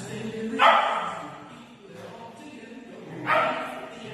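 A dog barking twice, one loud bark about half a second in and another near the end, over a quieter steady background.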